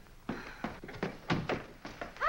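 A door being handled and opened, with a series of sharp knocks and thuds, about six in two seconds, the loudest a little past halfway.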